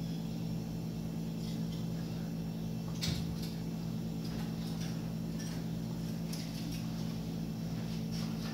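Steady low hum with a single sharp click about three seconds in and a few faint high ticks.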